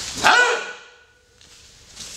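A single sharp martial-arts shout (kiai) from a practitioner as a punch is thrown, short and loud, its pitch arching up and down.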